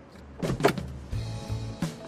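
A car door being unlatched and opened: sharp clicks about half a second in and another knock near the end, over background music.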